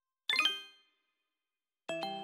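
Two separate electronic chime strikes: a bright, high one about a quarter second in that fades within about half a second, then a lower, fuller one near the end that rings on.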